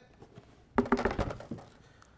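A short clatter of knocks and rattles, about a second in, as a charging tower of plastic Milwaukee battery chargers on a wooden base is set down on a plywood table.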